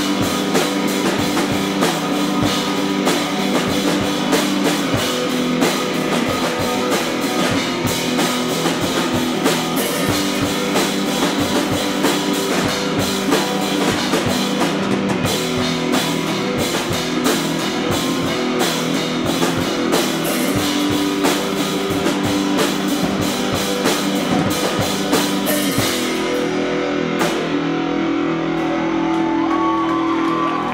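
A live screamo band playing: loud electric guitar over a drum kit with rapid drum and cymbal hits. Near the end the drums drop out and the guitar rings on alone.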